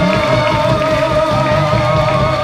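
Live band of trumpet, piano, bass guitar and drums playing Latin pop, with one long note held steady over the rhythm section.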